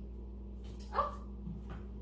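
Quiet room with a steady low hum, broken about a second in by a single short spoken exclamation, "Oh".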